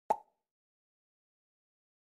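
A single short pop sound effect about a tenth of a second in: a sharp click with a brief pitched ring, the cue for the learner to repeat the word.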